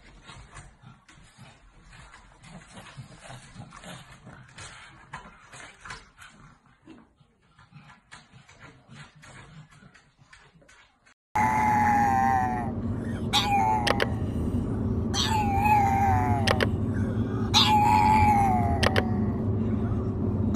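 A pug howling in the back seat of a moving car: about five wavering calls of roughly a second each, over the steady hum of the car on the road. Before this, faint scattered clicks against room sound.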